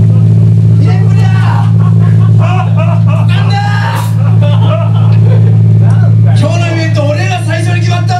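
Loud, steady low hum from the band's amplifiers left running between songs, with people's voices talking over it.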